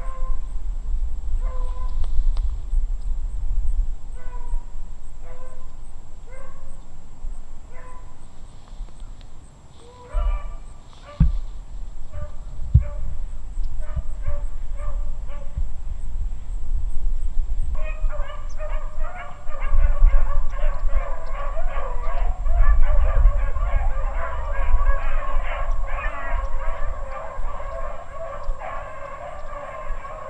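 A pack of beagles baying while running a rabbit. At first single bays come about once a second; about two-thirds of the way in, many dogs cry together in a continuous chorus.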